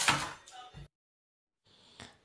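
A brief scrape and clatter of a long steel ruler being laid on a cutting mat with a knife being handled, loudest just at the start. The sound then cuts out to total silence for most of a second.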